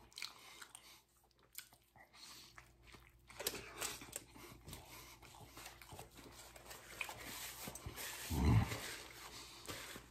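A person chewing a mouthful of burrito close to the microphone: irregular wet mouth clicks and breathing. A brief low sound about eight and a half seconds in is the loudest moment.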